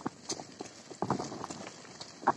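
Bicycle rattling over a rough dirt road: irregular clicks and knocks, with a louder cluster about halfway through.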